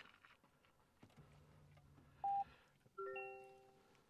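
Electronic cabin chimes from a 2023 Toyota Prius: a single short beep about two seconds in, then a bell-like multi-tone chime about three seconds in that rings and fades away, starting to repeat about a second later.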